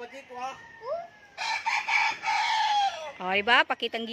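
A gamecock rooster crowing once: one long, loud crow starting about a second and a half in that falls in pitch at its end.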